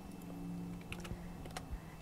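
A few faint computer keyboard clicks, scattered through the second half, over a low steady hum.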